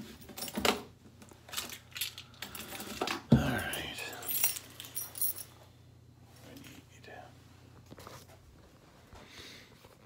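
Small metal objects clinking and jingling as they are handled, with the loudest clatter a little after three seconds in; after about five and a half seconds only faint handling sounds remain.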